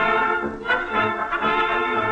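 A 1938 dance orchestra playing the instrumental introduction of a German Schlager, brass to the fore, before any singing comes in.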